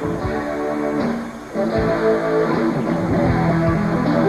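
A live rock band led by electric guitar, with held, ringing chords over a steady low end. The music dips briefly about a second and a half in, then comes back fuller.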